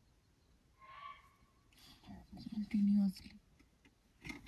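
A short, faint sambar deer alarm call about a second in, a sign that a tiger is nearby. Hushed whispering voices follow.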